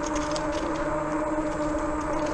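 Fat-tire e-bike rolling along a paved trail: steady tyre and wind noise under a steady low hum, with faint light ticks.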